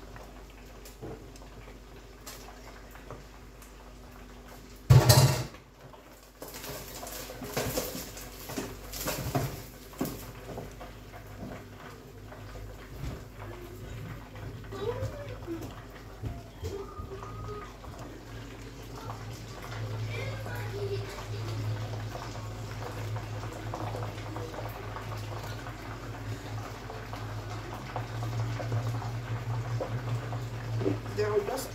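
Wooden spoon stirring meat in a stainless steel cooking pot, knocking and scraping against the pot, with one loud clatter about five seconds in and a few more knocks after it. A steady low hum starts partway through and grows louder near the end.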